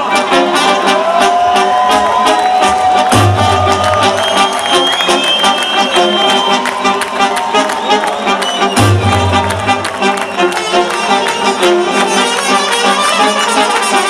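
Live drum and bass music played loud through a festival sound system, heard from within the crowd: a fast drum beat with melodic lines over it, and a deep bass that comes in for stretches of a second or two, three times.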